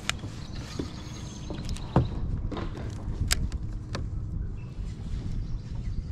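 A handful of sharp clicks and knocks from fishing tackle being handled aboard a kayak, the clearest about two seconds in, over a low steady rumble.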